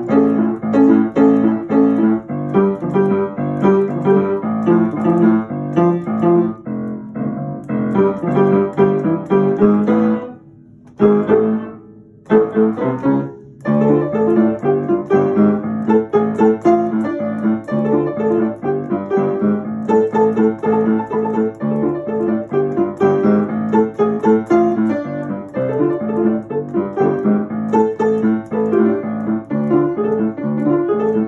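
Upright piano being played by hand: a continuous run of chords and notes that breaks off briefly twice, about ten and twelve seconds in.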